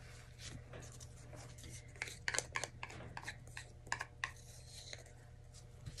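Scattered small clicks and taps of plastic paint bottles and cups being handled, a cluster of sharper clicks in the middle, over a steady low hum.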